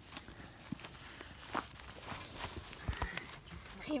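Footsteps and light rustling on dry grass, with scattered soft knocks and one low thump about three seconds in.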